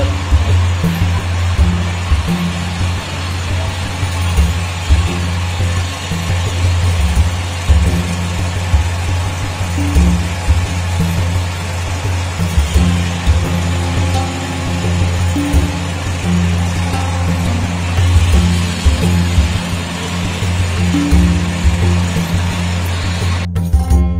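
Loud, steady low machinery hum and rumble in the kiln area, mixed with background music. About half a second before the end it cuts abruptly to clean guitar music.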